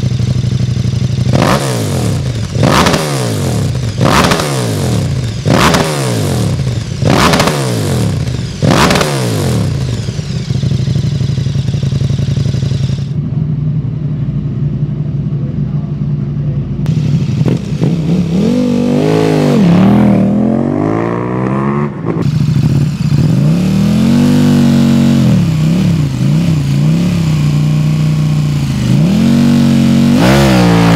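KTM 1290 Super Duke R's V-twin with an Akrapovič exhaust, revved at a standstill: six quick throttle blips about a second and a half apart, then idling. Near the end come several slower, longer revs that rise and fall.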